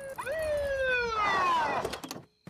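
Police car pulling up: one wailing tone that rises quickly and then slides down in pitch over a rush of noise, stopping just before the end.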